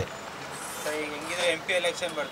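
Low background street traffic noise, with a quieter voice speaking in the second half.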